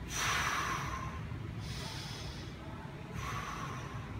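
A man taking three slow, deep breaths, the first the loudest, each lasting about a second. These are controlled breaths taken while holding a bar overhead against resistance-band tension.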